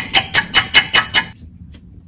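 Clock-ticking sound effect: rapid, evenly spaced ticks about five a second, stopping abruptly a little over a second in.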